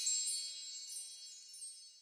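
The ringing tail of a high, shimmering chime sound accompanying an end logo, fading out by the end.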